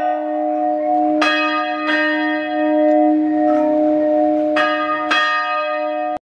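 Church bell ringing, struck about four times in two close pairs, each stroke ringing on over a steady low hum.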